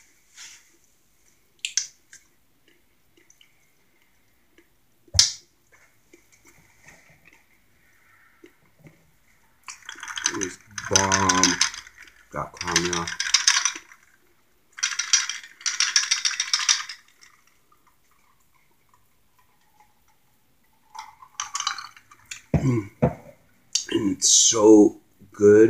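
A person drinking at the table: loud sips, swallows and breathy exhalations in a cluster between about ten and seventeen seconds, after a single sharp tap about five seconds in.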